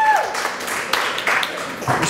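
A small audience applauding in a brief, scattered round. The tail of a man's drawn-out word is heard at the start.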